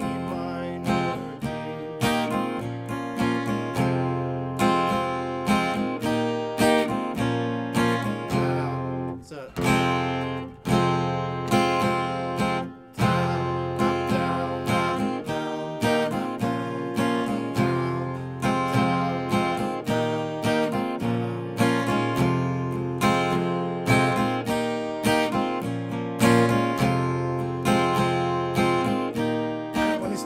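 Acoustic guitar with a capo on the first fret, strummed steadily through an E minor, D major and A minor chord progression, the intro of the song. There are a few brief breaks around the middle.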